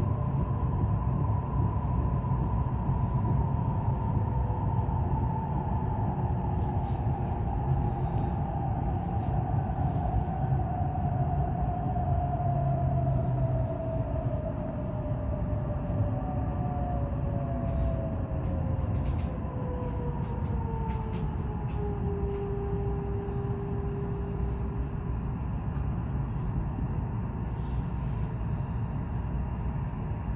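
Inside a Nuriro electric multiple-unit train slowing on its approach to a station: a steady low rumble of wheels on rail under a whine from the traction motors. The whine falls steadily in pitch as the train loses speed and levels off about two-thirds of the way through, with a few light clicks along the way.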